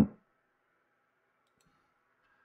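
The end of a spoken word, then near silence with one faint mouse click about one and a half seconds in.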